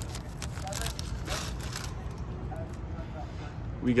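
Foil trading-card pack wrapper crinkling and cards being handled, a few short crackles in the first second or so, over a steady low rumble.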